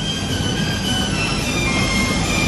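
Steady mechanical background noise: a low rumble with several thin, high whining tones that come and go.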